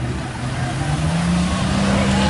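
Off-road 4x4's engine running under load as it pushes through a deep mud pit, revving up about a second in and holding the higher pitch.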